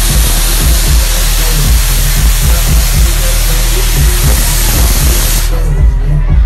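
Loud dance music from a nightclub sound system with a heavy, repeating bass beat, picked up on a phone microphone. A hiss-like wash sits over the top and drops away about five and a half seconds in.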